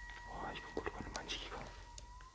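Soft whispering broken up by a few small handling clicks, over a faint steady high tone.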